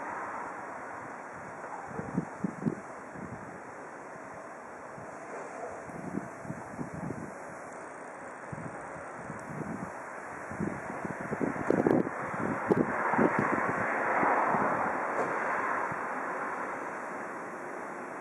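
Outdoor ambience: a steady rush of background noise, with wind buffeting the microphone in irregular gusts that are strongest about twelve seconds in.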